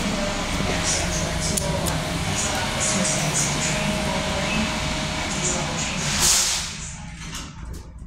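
Underground train-platform noise, a steady hiss and rumble with a train standing at the platform. Near the end it drops sharply as the elevator doors shut and close it out.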